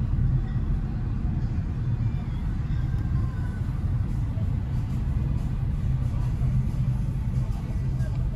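Steady low rumble of road and engine noise inside a slowly moving car with its windows open.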